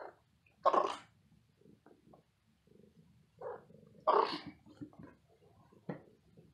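A kitten and an adult cat play-fighting in a carpeted cat tree: two short, loud noisy bursts, about a second in and again just after four seconds, with soft scuffling between.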